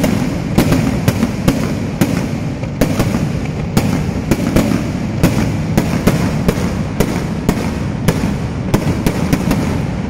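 A long run of firecrackers going off without a break: a dense crackling rumble with sharp, louder bangs two or three times a second.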